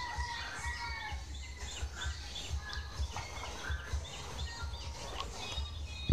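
A rooster crowing once in the first second, with smaller birds chirping repeatedly throughout.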